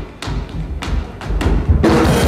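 Live drum kit in a sparse break: low bass-drum thumps with short, sharp hits between them, about one every quarter to half second. Near the end the full kit and band come back in.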